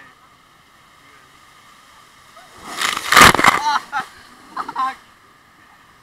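Water sloshing around an inner tube on a waterpark ride, with a loud burst of splashing and voices about three seconds in and two short voice bursts after it, heard through a waterproof camera case.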